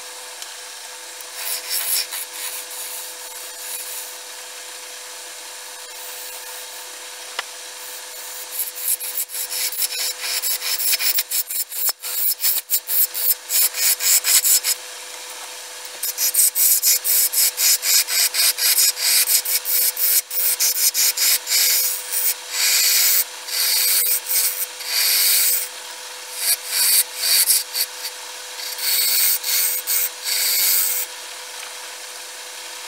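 Wood lathe running with a steady hum while a hand-held gouge cuts into a spinning wooden blank, hollowing its face. The rough, hissing cuts come in repeated bursts with short pauses, light at first and much heavier from about eight seconds in.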